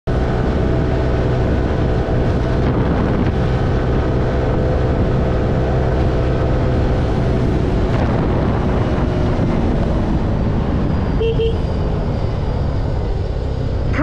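Motor scooter running steadily at road speed, with heavy wind and road rush on the microphone. A brief beep about eleven seconds in.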